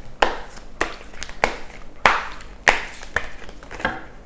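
A deck of glossy tarot cards being shuffled by hand: a run of sharp slaps and riffles, about one every half second or so.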